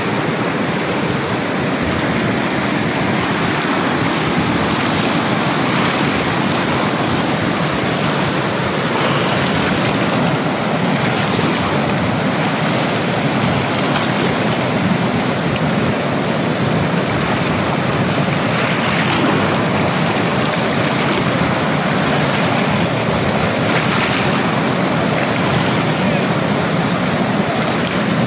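Mountain river rapids rushing loudly and steadily over boulders, white water churning close by, with some wind buffeting the microphone.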